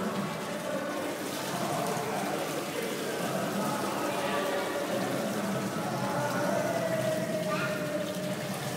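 Water poured in a steady stream from a metal pot over a stone lingam, splashing into the basin beneath it during a ritual bathing, with faint voices behind.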